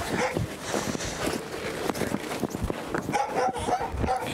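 Footsteps crunching on hard-frozen snow, with an animal's high whining call near the end.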